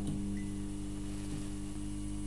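Steady electrical hum and buzz of a neon sign, with a faint hiss over it.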